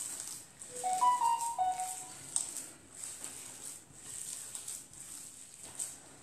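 Hands squeezing and kneading a soft, moist minced-meat loaf mixture in a glass bowl: repeated wet squishing. A short run of four or five pitched notes sounds about a second in.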